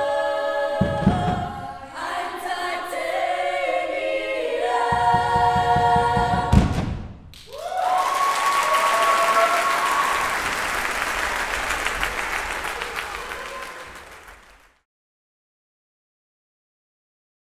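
Women's choir singing with drum beats, ending on a loud final hit about six and a half seconds in. Then applause and cheering with high whoops, fading out to silence near the end.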